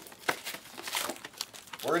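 Trading-card pack wrappers crinkling and crackling as they are handled, with a few sharp crackles scattered through.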